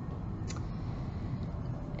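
Pause between words: quiet indoor room tone with a steady low hum, and one faint click about half a second in.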